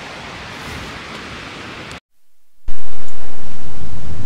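Wind blowing across the microphone, a steady rushing noise. About halfway it cuts out for a moment, then comes back far louder and heavier in the low end, slowly easing off.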